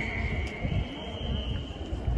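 Outdoor background during a pause in a man's speech: irregular low rumbling noise with a faint steady high-pitched whine through most of it.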